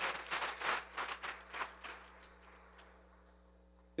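Scattered congregation applause, hand claps thinning and dying away over about two and a half seconds, then near silence.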